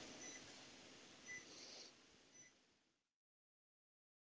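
Near silence: low room noise with three faint, short electronic beeps about a second apart. The sound then cuts out completely about three seconds in.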